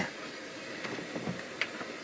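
Dead air on a telephone conference line: a steady low hiss where the cued music has not started, with a faint voice in the background a little past one second in and a light click shortly after.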